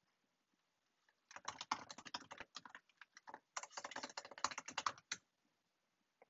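Typing on a computer keyboard: a quick run of keystrokes starting about a second in and lasting about four seconds, with a short pause midway.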